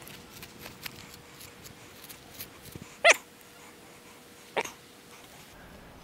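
Soft, irregular strokes and scrapes of a brush working through the long hair of a Highland bull's tail. They are broken by two short, high-pitched yelps about a second and a half apart.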